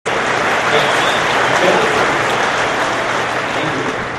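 Large audience applauding, a dense, steady clatter of many hands clapping.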